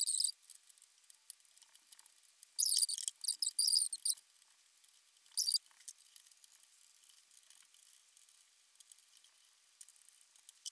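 Faint, high-pitched clicks and rustles of small screws and washers being handled while a water-cooler radiator is screwed to a steel PC case. They come in a few short clusters, the longest just under halfway through, then thin out to scattered ticks.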